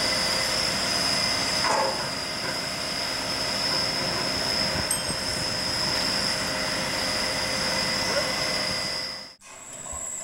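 Mobile crane running steadily while it holds the pump jack on its chains: a constant engine noise with a high-pitched whine over it. It cuts off abruptly near the end.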